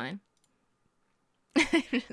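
Near silence, then a woman's short laugh breaking out about one and a half seconds in.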